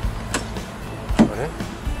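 A single sharp click from a Tesla Model X front door latch releasing as the interior door button is pressed.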